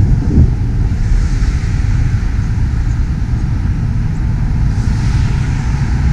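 Wind buffeting a camera microphone held out the window of a moving van at highway speed, a loud steady rumble with road and traffic noise.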